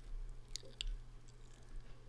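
Quiet pause with a faint steady low hum and a few small clicks, the mouth noises of the narrator between sentences.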